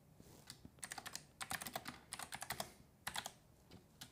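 Typing on a computer keyboard: a few scattered key clicks, then dense runs of rapid keystrokes, a short pause, and another brief flurry near the end.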